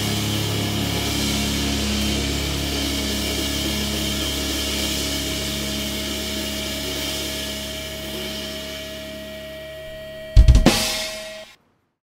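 The song's final chord held with the drum kit, cymbals ringing, slowly fading over several seconds. About ten seconds in comes a short flurry of loud drum and cymbal hits, then the sound cuts off abruptly.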